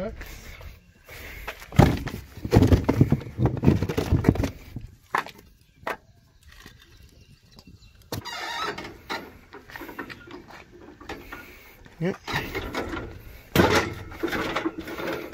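Irregular knocks and clunks of wooden blocks and lumber being set on asphalt under a truck cab, with short bursts of clatter.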